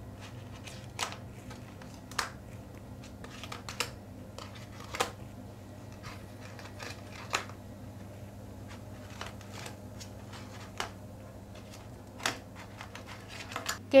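Partly dried cake rusk slices being picked up and turned over one at a time on a metal baking tray: light, sharp clicks and taps, about a dozen, irregularly spaced around a second apart, over a faint steady low hum.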